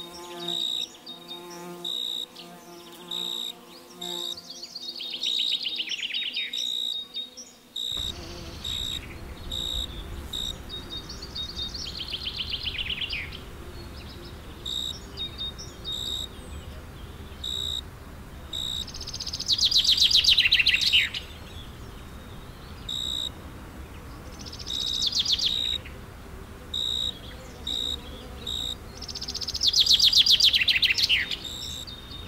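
A bee buzzing in a steady hum for the first eight seconds or so. Through it all a bird repeats a short high chirp about twice a second, and every six seconds or so sings a falling trill, loudest about two-thirds of the way through.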